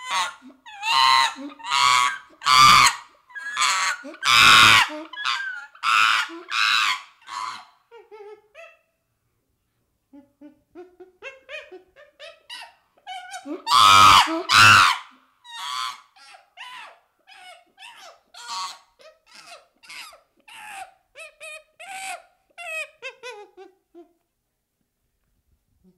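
Young chimpanzee calling in two runs of short, shrill, wavering squeals and hoots, with a pause of about two seconds in the middle. The loudest calls come about five and fourteen seconds in, and the second run trails off into softer calls that fall in pitch.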